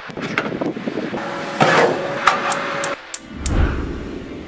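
Rustling and handling knocks, then a quick series of sharp clicks from a gas stove's spark igniter, about four a second, ending in a low whoosh as the burner catches near the end.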